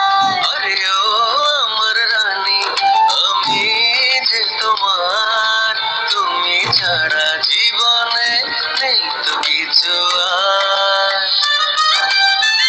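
A Bengali song: a voice singing a melody with long held and sliding notes over instrumental accompaniment.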